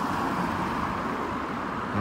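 Road traffic noise from a city street, with a car driving past.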